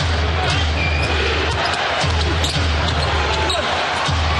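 Basketball game crowd noise in an arena, with a basketball being dribbled on the hardwood court and brief sneaker squeaks.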